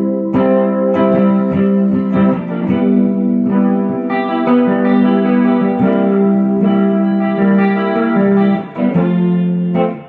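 Electric guitar chords played through a Strymon Deco pedal set for chorusing, with the warble and saturation turned up a little, into a combo amp. The chords are held and change about every second, and the playing stops near the end.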